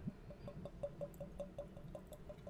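Whisky faintly glugging from a bottle neck as it is poured into a tasting glass: a quick, even run of small gurgles, about five a second.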